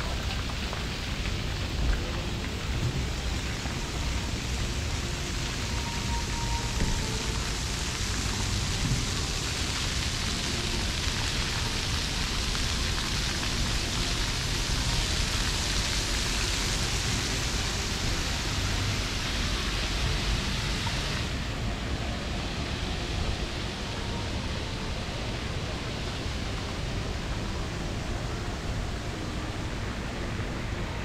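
Water spraying from splash-pad fountains: a steady hiss that grows brighter in the middle and drops off suddenly about two-thirds of the way through, over a steady low rumble.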